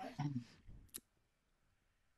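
A voice trailing off faintly over a conference-call line, then a single sharp click about a second in.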